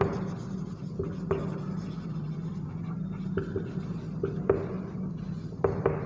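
Marker pen writing on a whiteboard: short, irregular strokes and taps of the tip against the board, over a steady low hum.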